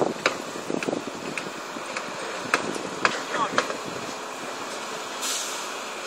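Steady mechanical running noise of a PC strand pusher machine feeding steel prestressing strand through a duct, with scattered sharp clicks and a brief hiss near the end.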